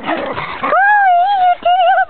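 West Highland white terrier whining: after a brief rush of noise at the start, one long high wavering whine of nearly a second, then a shorter wavering whine near the end.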